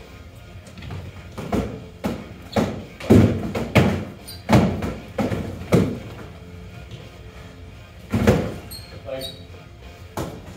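Foam-padded boffer weapons striking foam shields and bodies in a sparring bout: a run of dull thuds and smacks, several close together through the middle and one more near the end.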